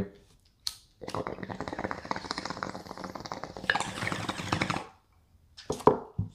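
A lighter clicks, then a glass bong bubbles in a fast, crackling stream for about four seconds as a hit is drawn through the water. The sound changes near the end and then stops abruptly.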